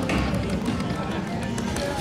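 Video slot machine spinning its reels with the game's music and spin sounds, over the steady background noise of a casino floor.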